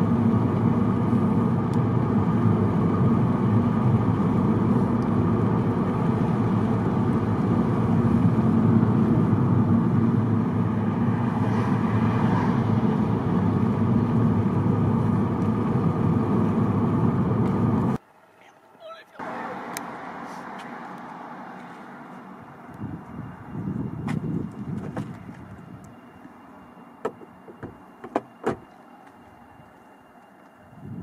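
Steady road and engine rumble inside a moving car's cabin. About two-thirds of the way through it cuts off suddenly, leaving a much quieter outdoor background with a few sharp clicks.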